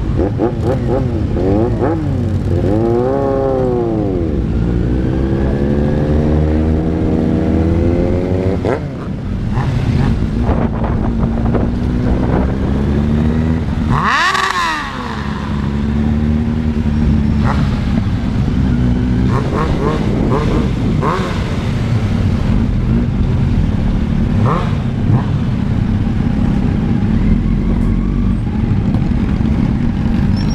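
Motorcycle engines on a group ride. An engine revs up and down, then climbs steadily in pitch as it accelerates. About halfway through comes a sharp rev that climbs high and drops back, and after that the engines run more steadily at low speed.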